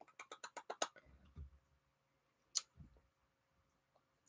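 A quick run of about nine light clicks, roughly ten a second, in the first second, then a soft low knock, and a single sharp click about two and a half seconds in.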